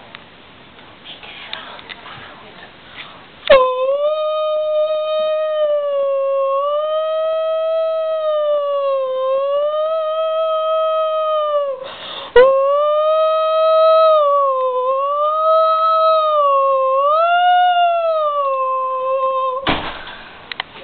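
A long, loud held tone with a steady pitch that wavers slowly up and down. It starts suddenly about three and a half seconds in, breaks off for a moment about twelve seconds in with a short burst of noise, then carries on until just before the end.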